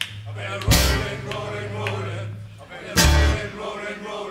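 A live band playing with upright bass, acoustic guitar and drum kit, with a held bass note and two loud accented hits: one just under a second in, the other about three seconds in.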